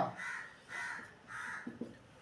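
A bird calling three times in a row, evenly spaced, each call short, with a couple of faint taps near the end.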